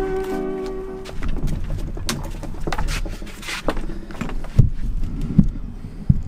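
Background music with a held tone stops about a second in. It is followed by irregular clicks and knocks and two heavier thumps near the end, handling noise as the camera is picked up and moved.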